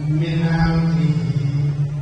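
A man's voice chanting one long, steady held note: the drawn-out vowel of religious recitation.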